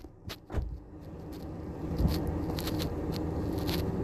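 Car noise heard from inside the cabin, swelling over the first couple of seconds and then holding steady, with a few short clicks near the start.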